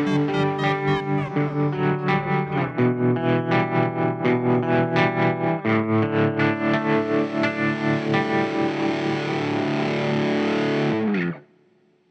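Distorted electric guitar playing the closing bars of a rapcore song in a steady pulse, ending on a held chord that cuts off abruptly near the end.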